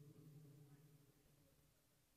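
Near silence, with a faint low hum that fades away over the first second and a half.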